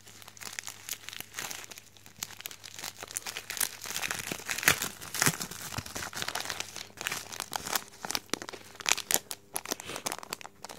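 A white air-mail mailer envelope being torn open and handled: irregular crinkling, crackling and tearing, with the loudest rips about four to five seconds in and again near the end, where the badge's plastic sleeve crinkles as it is drawn out.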